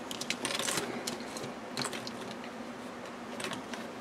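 Light clicks, taps and rustles of notebooks being handled and set down on a tabletop, a cluster of them in the first second and a few more scattered after.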